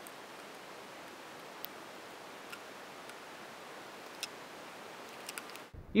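Faint steady hiss with a few small, sharp, irregular clicks from the metal-framed wiper blade and its rubber refill and steel strips being handled as the new blade rubber is fitted.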